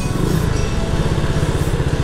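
SYM 150cc New Fighter scooter's single-cylinder engine running steadily while riding.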